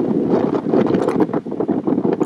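Wind blowing on the camera's microphone: loud, steady noise with rapid fluttering.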